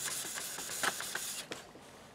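Steel dagger blade being hand-sanded, rubbed in strokes over abrasive paper wrapped on a block; the rubbing stops about one and a half seconds in.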